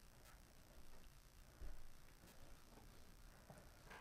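Near silence: faint room tone with a few light ticks.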